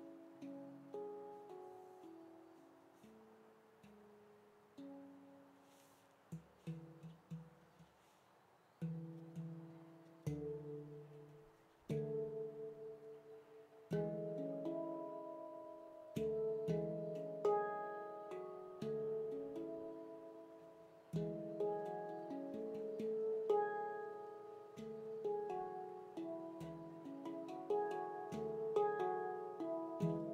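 Veritas Sound Sculptures F#3 pygmy 18-note stainless-steel handpan played by hand: struck notes that ring and fade, sparse and soft for the first several seconds, then a busier, louder run of notes from about twelve seconds in.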